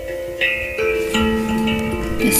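Handpan music: a slow melody of struck metal notes, each ringing on and overlapping the next, with a new note about every half second.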